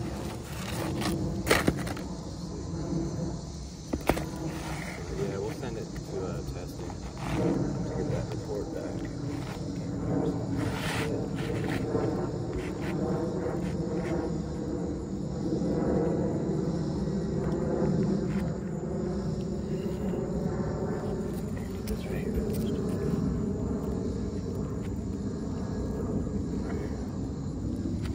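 Asphalt roof shingles being handled, slid and laid into place, with a couple of sharp taps in the first few seconds and scattered clicks after. Under it runs a steady low hum with murmured voices.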